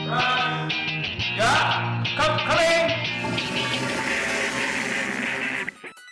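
Upbeat background music, with a toilet flush sound effect rushing through the second half and cutting off just before the end.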